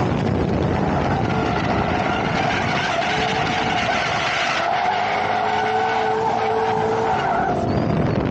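Drift car sliding through a continuous drift, its engine held at high revs over the hiss of tyres skidding on asphalt. The car holds a steady engine note for the whole slide.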